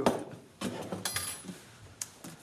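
A few light clicks and clinks of kitchen items being handled on a counter, with one sharp click at the start and a short ringing clink about a second in.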